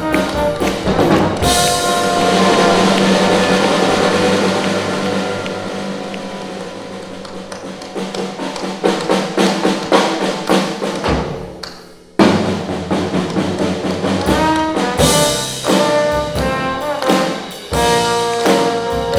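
Live jazz combo of trombone, drum kit and piano playing. About a second and a half in, a cymbal crash lands under a long held chord that slowly fades, drum strokes follow, and the band stops dead for a moment before 12 s, then comes straight back in with another crash a few seconds later.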